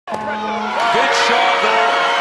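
Crowd cheering and shouting, with voices rising over a steady din and music underneath.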